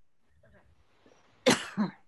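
A person coughs once, sharply, about one and a half seconds in, with a short spoken "okay" right after. The rest is quiet room tone.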